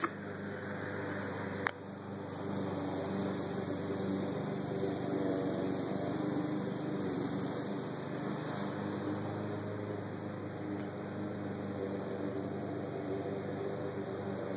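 A steady low mechanical hum, with a single sharp click a little under two seconds in.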